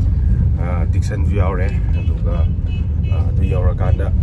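Steady low rumble of a car's engine and tyre noise, heard from inside the cabin while the car is moving, with a man's voice talking over it.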